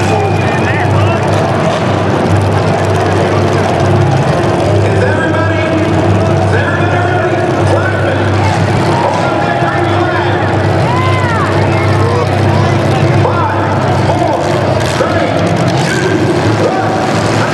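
Several demolition derby cars' engines revving hard at once, a continuous loud din, with a few sharp knocks near the end as the cars ram each other.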